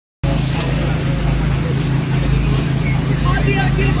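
A truck engine idling with a steady low hum, cutting in suddenly just after the start. Faint voices near the end.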